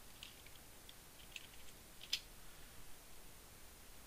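A few faint computer keyboard keystrokes, with one sharper key press about two seconds in.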